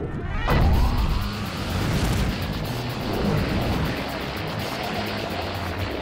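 Cartoon jet engines blasting off with a sudden loud start about half a second in, then a steady rushing roar of flight, under background music.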